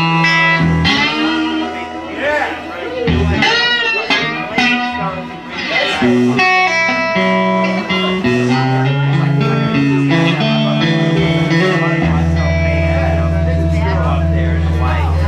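Live blues band playing an instrumental passage: electric guitar lead lines with bent notes over bass guitar. It ends on a long held low chord.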